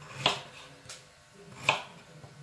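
Kitchen knife slicing a peeled raw potato on a wooden cutting board: three cuts, each ending in a short knock of the blade on the board, the first and last louder.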